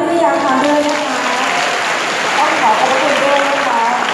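An audience clapping, beginning about a second in and thinning near the end, under a woman's voice amplified through a microphone and PA.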